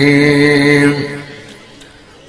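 A man's voice chanting Arabic in a melodic sermon style, holding one long steady note at the end of the phrase "wa dā'iyan ilā Allāhi bi-idhnihi" that fades out about a second in, followed by a pause before the next phrase.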